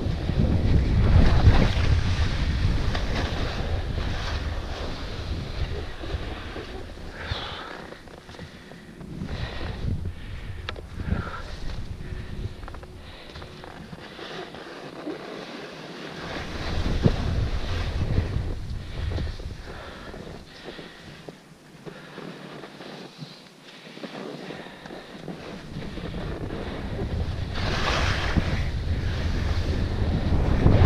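Wind buffeting the microphone of a first-person camera on a skier going downhill, with the hiss and scrape of skis on snow. It is loud at the start, drops off through the middle, and builds again near the end.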